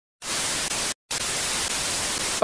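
Television static sound effect: a loud, even hiss like an untuned TV, starting a moment in and cutting out briefly about a second in before resuming.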